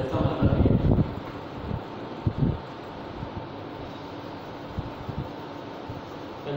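Chalk tapping and scraping on a blackboard as a line is written, a few short soft knocks over a steady room hum. A man's voice is heard briefly in the first second.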